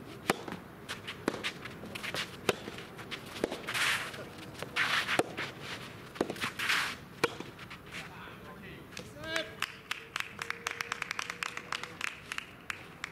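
A soft tennis rally: the rubber ball is struck sharply by rackets about once a second for some seven seconds, from the serve on, with players' shouts between shots. Lighter taps follow near the end.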